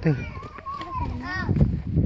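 Young children's high-pitched voices talking and calling out.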